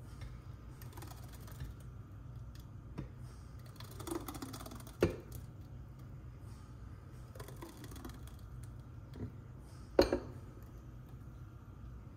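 Blender jar of thick blended greens being tipped and knocked against glass bowls as the purée is poured and shaken out: scattered light clicks and taps, with two sharper knocks about five and ten seconds in.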